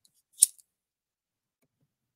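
A single short, sharp click about half a second in.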